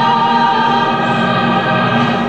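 Two women's voices singing together, holding one long note at the close of a gospel song.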